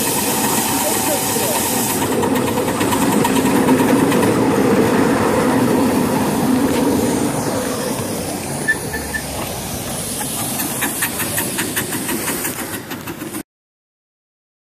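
Ride-on live-steam miniature train running: a steady rumble of the cars rolling on the track mixed with steam hiss. In the last few seconds comes a quick run of sharp clicks, and then the sound cuts off suddenly.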